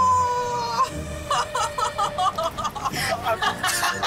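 Laughter: a held, slightly falling note, then a quick run of short high 'ha' bursts, over background music.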